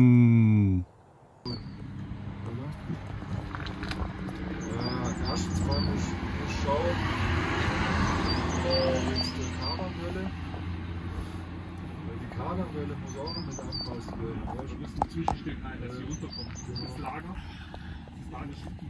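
People talking, opening with a short hummed 'mmh'. Underneath runs a steady low hum, and a bird chirps in small groups of quick high notes several times.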